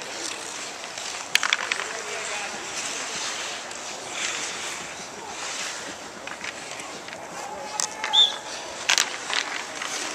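Ice hockey play on an outdoor rink: skate blades scraping the ice under a steady hiss, with a few sharp clacks of sticks and puck, one about a second and a half in and several near the end, and faint voices of players.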